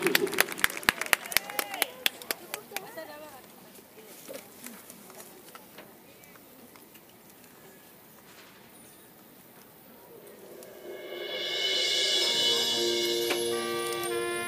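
Scattered clapping dying away over the first few seconds, then a lull, then a marching band coming in about ten seconds in with a swelling sustained chord of wind instruments.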